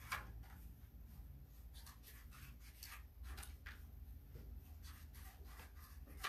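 Faint, irregular snips and rustles of scissors cutting construction paper, over a low steady room hum.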